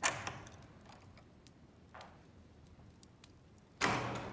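A door opening with a sudden knock of its latch that rings away over about a second, a faint knock about two seconds in, and a louder thud near the end as the door shuts, each echoing briefly in a large room.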